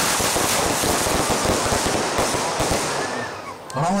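Firework going off with a dense, continuous crackle of sparks that dies away after about three and a half seconds.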